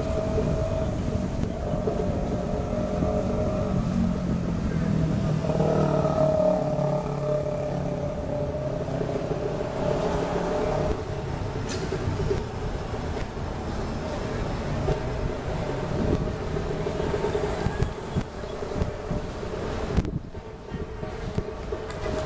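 City street traffic: car engines and tyres running steadily, with indistinct voices mixed in.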